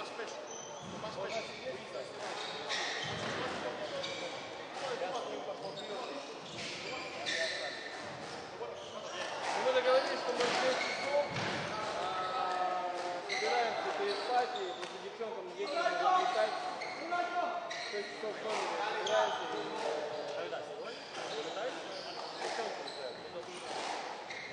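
A squash ball being struck and hitting the court walls: an irregular series of sharp knocks, with voices talking in the background.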